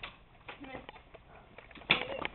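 Faint voices in a room, with a few light clicks and a sharp knock just before the end.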